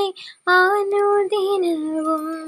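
A woman singing a Malayalam Christian devotional song solo and unaccompanied: a short break for breath just after the start, then a phrase of held notes that slides down in pitch near the end.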